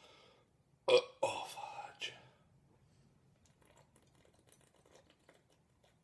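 A man burps loudly about a second in, a sound lasting about a second. After it come only faint small sounds as he tips a glass bottle of malt liquor up to drink.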